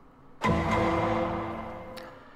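A transition sound effect: a sudden burst of noise with a few steady tones under it, starting about half a second in and fading away over the next second and a half.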